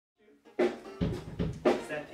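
Drum kit playing a short figure of four hits in about a second, starting about half a second in, with deep bass drum thumps among them.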